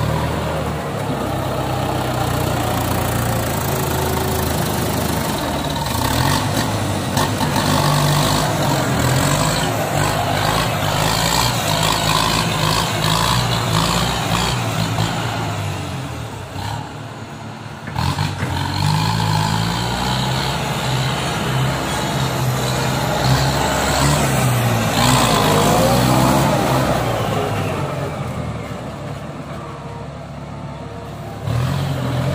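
Kubota M95 farm tractor's diesel engine working under load as it pulls a rotary tiller through heavy mud, its pitch rising and falling as the throttle changes, with a short drop in level around the middle.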